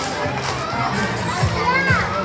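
Upbeat dance music played for a children's dance routine, with a steady kick-drum beat about twice a second. Children's voices chatter and call over the music.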